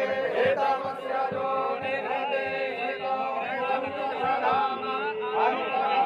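Several voices chanting Hindu mantras together in a steady, unbroken recitation with long held notes, as at a Shiva puja.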